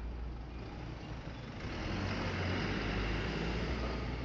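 A school minibus drives past close by. Its engine and tyre noise swells from about halfway through and is loudest near the end.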